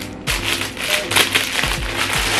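Clear plastic packaging bag crinkling and rustling in quick irregular crackles as it is handled and opened, over soft background music with a beat.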